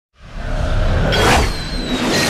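Whooshing sound effects of an animated countdown intro. A rushing whoosh swells about a second in, and thin falling tones follow near the end.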